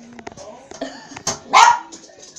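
Small Yorkshire terrier barking, with the loudest, sharpest bark about one and a half seconds in.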